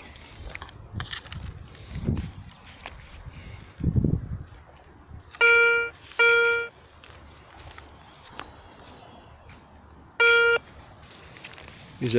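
Garrett Ace 150 metal detector giving three short, identical steady beeps, two in quick succession about five and a half seconds in and a third about four seconds later, as the coil passes over a metal target.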